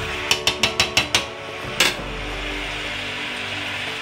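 A kitchen utensil is tapped rapidly against the rim of a stainless steel pot: about seven quick sharp knocks in the first second, then a single knock a little later.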